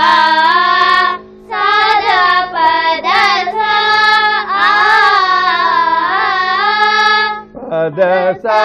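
Two young girls singing a Carnatic melodic phrase together on an open "aa" vowel (akaram), with held notes and gliding ornaments, over a steady drone. The singing breaks briefly about a second in and again near the end.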